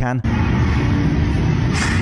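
Loud steady room noise in a large gym: a constant low rumble with a short hiss near the end. A man's word cuts off at the very start.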